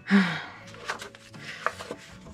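A short breathy exhale, then light rustling and a few soft taps of drawing paper as a sheet is lifted off a stack of drawings.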